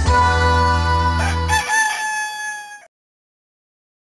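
The end of a short music jingle with a rooster's crow laid over it about a second in. The bass stops soon after, the last chord rings briefly, and the sound cuts to silence about three seconds in.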